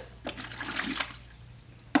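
Urine poured from a plastic graduated measuring container into a toilet bowl: about a second of splashing that trails off, then one sharp click near the end.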